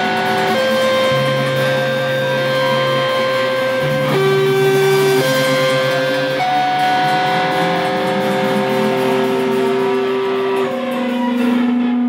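Electric guitars playing long, sustained chords that change every second or two, with no drums. Near the end the chord gives way to one held low note.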